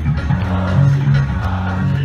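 Electric bass and electric guitar playing a song live through a stadium PA, the bass line moving in steady low notes.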